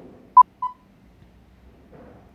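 Film countdown leader beep sound effect: two short beeps of the same pitch, a quarter of a second apart, the second trailing off briefly.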